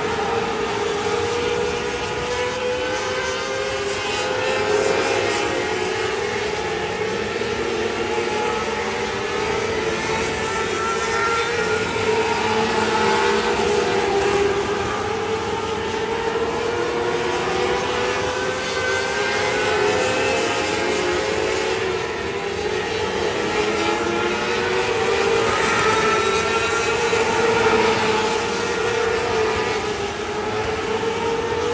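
600 micro sprint race cars running at full racing speed, their 600cc motorcycle engines revving high. Several engines overlap, each rising and falling in pitch again and again as the cars accelerate and lift around the laps.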